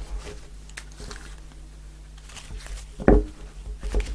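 Tarot cards being handled on a cloth-covered table: faint sliding and rustling as the deck is picked up and split for shuffling, with one louder thump about three seconds in.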